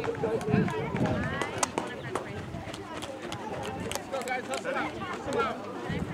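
Several voices talking and calling out at once, overlapping one another, with a few sharp clicks scattered through.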